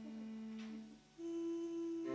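Slow voice-and-violin music: a long held note that breaks off about a second in, a brief near-gap, then a new, higher note held steadily.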